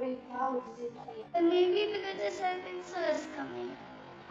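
A young girl singing a short tune, with held notes and a downward slide about three seconds in.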